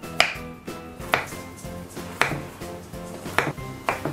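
Kitchen knife slicing through a firm log of chilled herb butter and knocking on a wooden cutting board, about one cut a second, five knocks in all, over background music.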